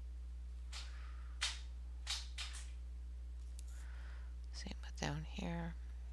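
A few short strokes of a brown Giorgione coloured pencil shading on a colouring-book page, then a brief low murmur of a woman's voice near the end.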